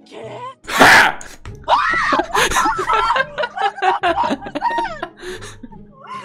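Young women laughing and squealing in high, rising-and-falling peals, after a loud sudden burst of noise about a second in.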